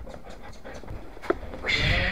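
A dog panting excitedly as it jumps about, with scuffling and clicks from the handheld camera. There is a brief, louder high-pitched sound near the end.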